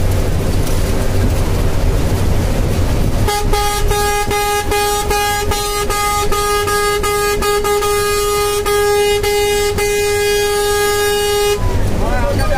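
Low road and wind rumble from a moving vehicle. About three seconds in, a single steady horn note starts and is held for about eight seconds with faint ticks through it, then cuts off suddenly.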